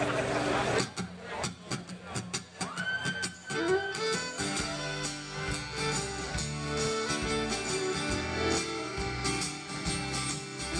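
A live band starting a country-rock song: a few loose acoustic guitar strums, a fiddle sliding up into a held note about three seconds in, then from about four seconds the full band (acoustic guitar, fiddle and bass) playing steadily.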